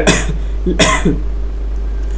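A man coughing, the strongest cough coming just under a second in.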